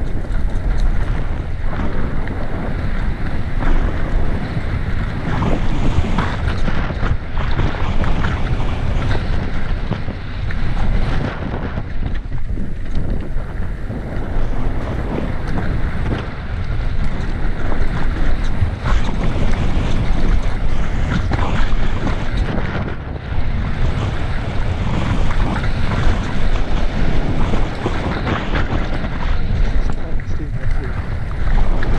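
Wind buffeting the microphone and mountain bike tyres rolling fast over a dirt forest trail, a steady loud rumble broken by frequent short rattles and knocks as the bike goes over roots and bumps.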